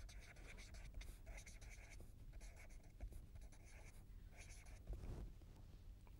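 Felt-tip marker writing on paper in a run of faint short strokes.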